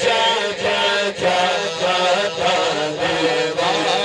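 A man singing an Urdu naat (devotional poem) solo into a microphone, his voice moving through long, wavering held notes.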